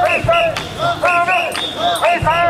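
Mikoshi bearers chanting together as they carry the shrine, many men's voices in short shouted calls repeated in a quick rhythm. A low thump comes just after the start.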